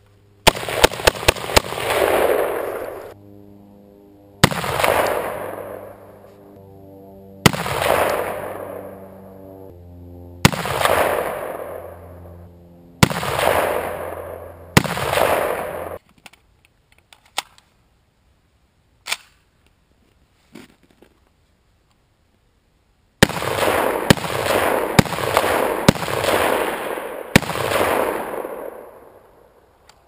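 Robinson Armament XCR-M semi-automatic rifle firing: a quick string of shots at the start, then single shots every two to three seconds, each trailing off over about two seconds. After a pause with a couple of faint clicks, a faster run of about eight shots.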